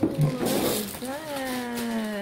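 A short rustle of handling in the first second, then one long, drawn-out vocal exclamation, held for about a second and falling slightly in pitch, as a toy box is opened.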